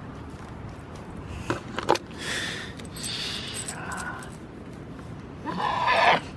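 Goat close to the camera: two sharp knocks, then short breathy noises up near the microphone, and a louder burst near the end.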